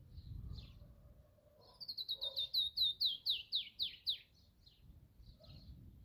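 A bird sings a fast run of about a dozen high, down-slurred notes, starting about two seconds in and lasting a little over two seconds, while other birds give scattered short chips. A low rumble sounds near the start.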